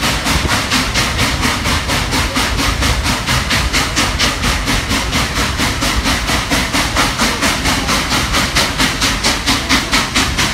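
Norfolk & Western 611, a J-class 4-8-4 steam locomotive, working with a quick, even exhaust beat of about four to five chuffs a second over a steady hiss.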